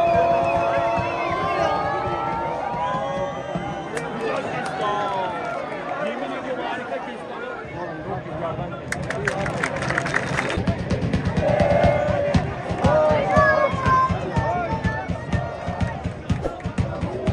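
Football crowd in the stands chanting and singing together, with a spell of rhythmic hand-clapping about nine seconds in.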